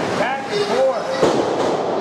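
A wrestler's body slamming onto the wrestling ring mat, one sharp thud about a second in, over spectators shouting in the hall.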